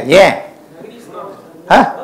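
A man's voice in short, loud exclamations: two quick bursts at the start and one more near the end, with faint low talk between them.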